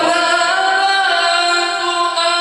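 A man reciting the Qur'an in melodic tajweed style, holding one long high note whose pitch bends only slightly.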